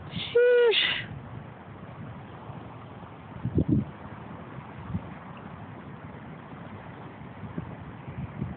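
A person's voice gives one short, high hoot about half a second in, the pitch holding steady and then dipping as it ends. Steady wind noise on the microphone follows, with a brief low gust-like rumble about three and a half seconds in.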